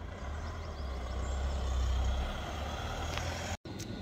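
A van engine running close by, a steady low rumble that swells to its loudest about two seconds in and eases off, then cuts off suddenly near the end.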